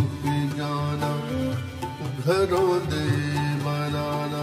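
Live ghazal ensemble music: melodic lines that glide and bend over a steady low drone, with no words sung.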